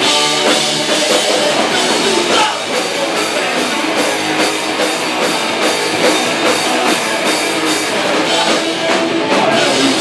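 Hardcore punk band playing live and loud: electric guitars over a drum kit beating a steady, fast rhythm.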